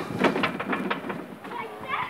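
Irregular knocks and a rumble from a playground climbing structure as a child moves across it, with faint children's voices.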